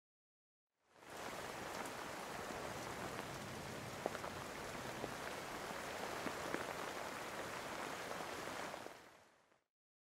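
Steady rain with a few sharper drop ticks. It fades in about a second in and fades out just before the end.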